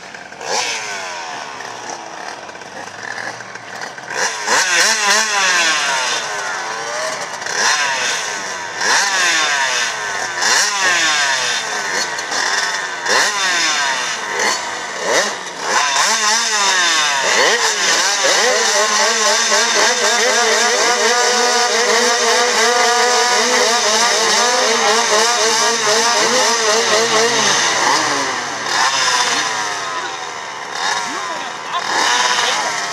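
Several speedway motorcycles revving at the start gate, engines blipped up and down over and across one another. In the second half they are held at steady high revs for about ten seconds, then drop off near the end.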